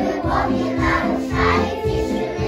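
Preschool children's choir singing together over an instrumental backing track with a steady beat.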